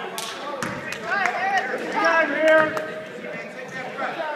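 A basketball bouncing on a gym's hardwood floor, a few irregular thuds, among people shouting and calling out; the voices are loudest around the middle.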